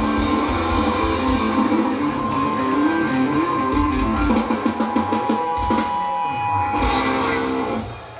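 Live rock band (electric guitars, bass, keyboards and drum kit) playing through a stage PA, picked up by a camera mic in the crowd, with a run of rapid drum strokes about halfway through. The music stops just before the end.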